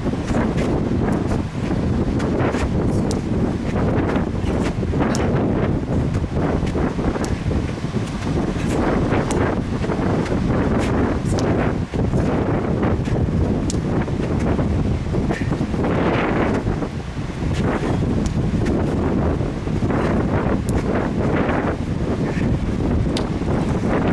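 Strong wind buffeting the microphone: a steady, loud rumble, with scattered short clicks through it.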